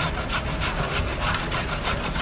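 A carrot being grated on a stainless-steel box grater: quick, evenly repeated rasping strokes, several a second.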